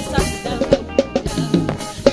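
Live gospel band accompaniment in which the drum kit plays a fill: a quick run of drum hits with cymbal crashes over the band, in a gap between sung phrases.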